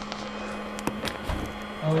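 A steady low hum with several sharp clicks and one low knock in the middle, as the foil-wrapped steam tube is handled. A short spoken "Oh" comes at the very end.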